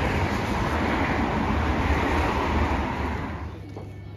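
Steady road traffic noise on a street, dropping away sharply about three and a half seconds in.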